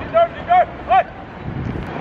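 A man shouting three short, loud calls, angrily scolding a cyclist for riding on the pavement.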